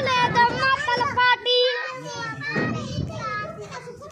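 Young boys shouting and calling out in high, sing-song voices.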